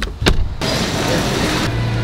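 Two sharp clicks from a car's interior door handle and latch, then a steady rushing noise.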